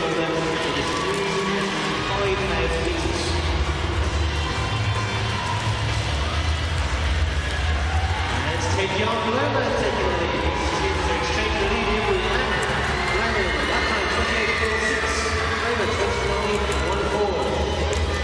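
Indistinct speech with music over a steady low hum, with no single event standing out.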